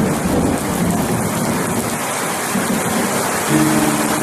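Heavy rain pouring steadily onto leaves, an even dense hiss, with a low rumble underneath that swells briefly near the end.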